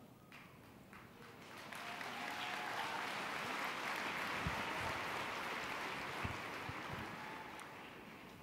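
Audience applause that swells about a second and a half in, holds, then tapers off near the end.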